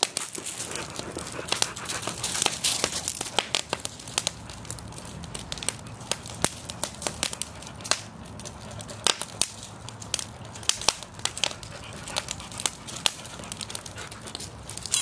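Wood fire crackling in a mesh fire pit, with irregular sharp pops throughout.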